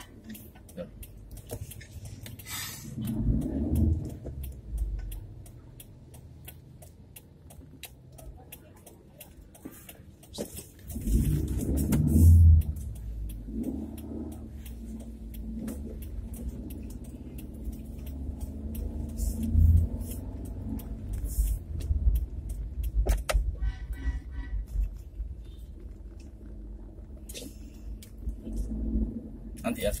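Low rumble of a car moving slowly in traffic, heard from inside the cabin, with scattered light ticks throughout. It grows louder about eleven seconds in.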